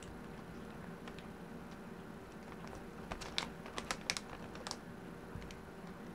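Paper being handled in a journal: a quick cluster of small clicks and taps between about three and five seconds in, over a faint steady hum.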